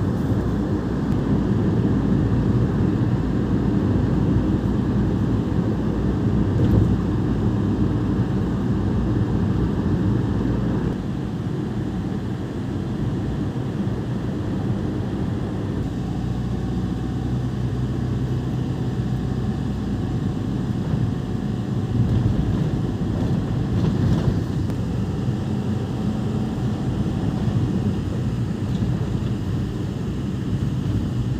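Steady road and engine noise inside a moving car's cabin: a low rumble that eases slightly about eleven seconds in.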